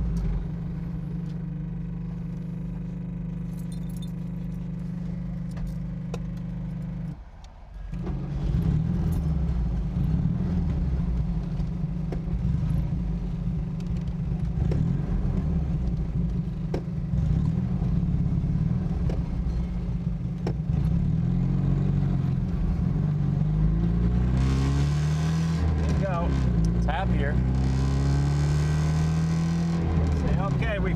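A Honda Z600's small two-cylinder engine running as the car drives, with the engine pitch rising again and again in the last third as it accelerates through the gears. It runs with the fuel cap off, to vent a tank whose blocked cap had starved the engine of fuel.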